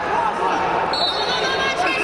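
Several voices shouting and calling out over a wrestling bout, with thuds from the wrestlers on the mat.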